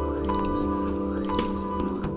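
A live band playing an instrumental passage: held keyboard chords over a steady bass line, with a few light cymbal hits.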